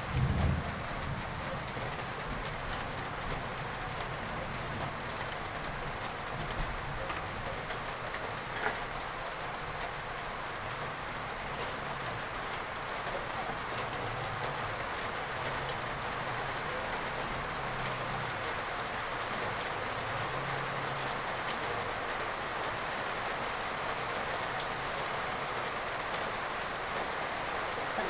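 Steady rain, an even hiss that runs unchanged throughout, with a few faint clicks.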